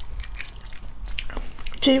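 Close-miked eggshell crackling and clicking as fingers peel a boiled balut (活珠子, half-developed duck egg), with some chewing. A woman's voice starts near the end.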